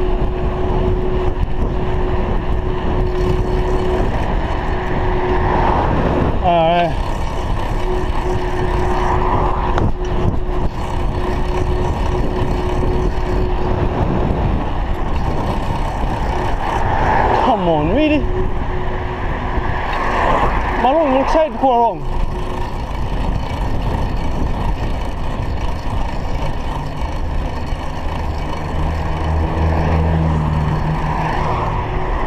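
Wind rushing over a GoPro Hero 3 camera mic on a moving road bicycle, mixed with tyre noise on tarmac. Brief warbling tones come about six seconds in and twice more in the second half, and a car's engine draws near toward the end.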